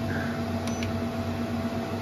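Growatt 12 kW low-frequency off-grid inverter humming steadily while it carries the load of a running three-and-a-half-ton air conditioner, with constant low tones over a steady background noise. A faint tick comes about a third of the way in.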